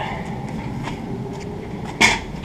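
Steady low background noise with a couple of faint knocks from a brass sousaphone being handled and carried, one about a second in and one near the end.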